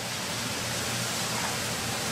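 Steady rushing of water, even and unbroken, with a faint low hum beneath it.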